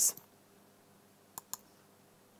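Two quick, sharp clicks about a second and a half in, a fraction of a second apart, over quiet room tone.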